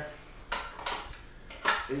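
A few short metal clicks and knocks from a rotisserie motor being fitted back onto the spit and its bracket.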